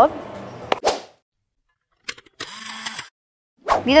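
Short editing sound effects over a channel logo animation: a click about a second in, then a few quick clicks and a brief swish around the two-second mark, set apart by dead silence.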